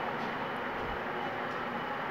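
Steady background noise of a workshop, an even hiss with no distinct sounds in it.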